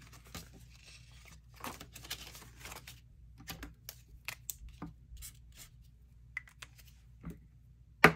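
Paper dollar bills rustling faintly as they are handled and counted, then a scatter of light clicks and taps from a marker on the paper savings cards.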